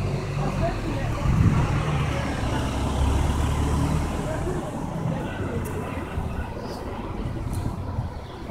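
A vehicle engine idling with a low, steady hum that weakens in the second half, over background voices.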